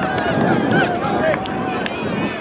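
Several players' voices talking and calling out on an open field, overlapping into loose chatter.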